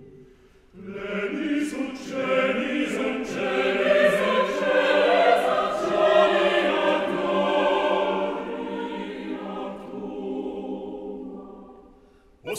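Mixed chorus singing unaccompanied (a cappella) in a resonant concert hall. The choir enters after a short silence about a second in, with sharp 's' sibilants, swells, then fades away near the end.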